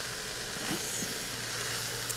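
Chopped vegetables and spices sizzling steadily in an Instant Pot electric pressure cooker on sauté mode, a soft, even hiss.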